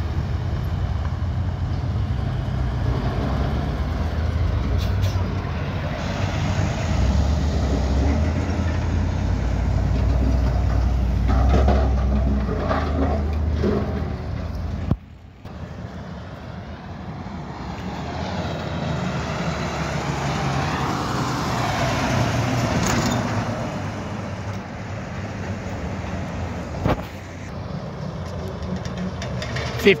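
Road traffic going by close at hand: heavy diesel trucks and a pickup with a steady low engine and tyre rumble. There is a sudden break about halfway through. After it, quieter traffic noise continues, with a diesel truck approaching near the end.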